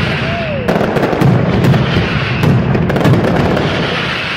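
Pirotecnia Vulcano's mascletà: a dense, unbroken barrage of loud firecracker reports. A brief falling whistle sounds through it in the first second.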